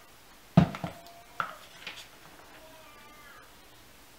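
Several sharp knocks and clicks of hard objects being handled, the loudest about half a second in, then a faint wavering pitched sound a little past halfway.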